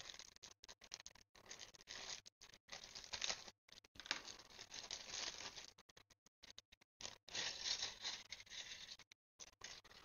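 Clear plastic kit bag crinkling on and off as the plastic model kit's parts trees are handled and pulled out of it.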